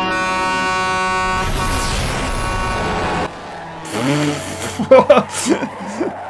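A sustained musical drone fades into the road noise of a truck passing at speed on a highway. The noise swells and cuts off suddenly a little after three seconds, and voices follow.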